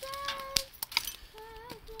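Split firewood pieces knocking and clinking against each other a few times as the strap holding the split round together is released. A child sings faintly over it.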